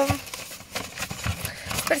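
Paper and plastic wrapping rustling unevenly as a hand rummages through the contents of a cardboard delivery box.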